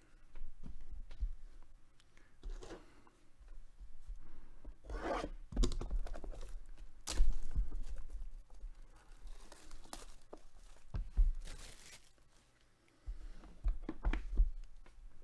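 Plastic shrink wrap being torn and crinkled off a sealed cardboard box of trading cards, in irregular rustling bursts with handling knocks on the box; a sharp tear about seven seconds in is the loudest.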